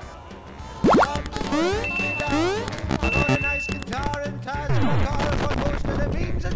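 Retro 8-bit video-game style music and electronic sound effects. A loud, sharp rising swoop comes about a second in, then quick rising and falling bleeps and beeps, and a falling swoop near the end.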